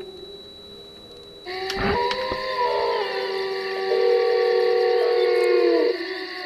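Electronic synthesizer drone of several held tones, swelling much louder about a second and a half in, with a few tones sliding down in pitch near the end.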